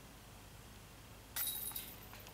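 A putted disc golf disc striking the hanging chains of a metal disc golf basket about a second and a half in: a sudden metallic jingle that rings briefly and fades, the sound of a made putt.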